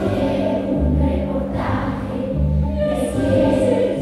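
Large children's choir singing long held notes together, over a low bass accompaniment that sounds a few separate notes.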